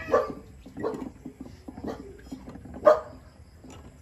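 A dog barking: four short barks about a second apart, the last one the loudest.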